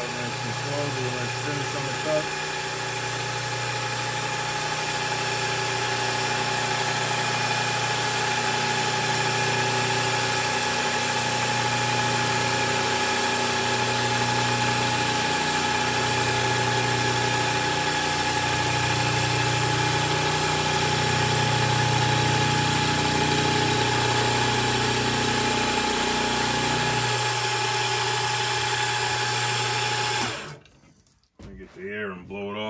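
Milling machine running steadily while its cutter machines a valve relief into the crown of a 92 mm piston: a steady mechanical hum with a slow waver in its low note, shifting slightly near the end.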